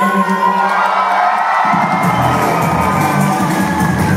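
Live band music heard from the audience, with the crowd cheering over it. About halfway through, a deep bass comes in underneath.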